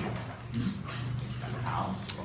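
A young girl's high, quiet voice answering with short sounds, rising in pitch near the end, over a steady low hum.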